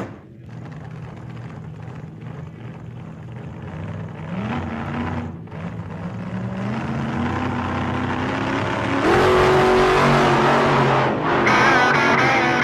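A motor vehicle engine accelerating. Its pitch rises in steps at about four, six and nine seconds in, and it grows steadily louder, loudest from about nine seconds in.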